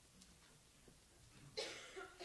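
Quiet room tone, then a person coughs once, sharply, near the end.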